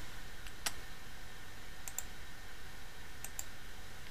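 A few short, light clicks, some in quick pairs, over a steady low hiss: clicking while marking words on a document on screen.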